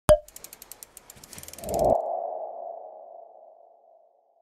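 Logo sting sound effect: a sharp click, a rapid run of ticks, a swelling whoosh about two seconds in, then a single ringing tone that fades away over the last two seconds.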